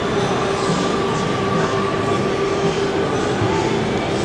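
Steady background din of a busy exhibition hall, with a constant humming tone throughout.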